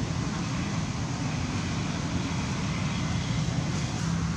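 Steady outdoor background noise: a continuous low hum and rumble with a fainter hiss above it, unchanging throughout.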